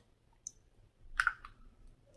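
Quiet handling sounds while testing a small purse-size perfume bottle: a faint click about half a second in, then a short breathy hiss about a second in.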